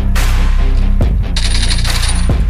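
Mobile shooter game audio: background music with a steady bass under it, sharp knocks about a second apart, and a high metallic jingle like coins or spent shell casings near the end.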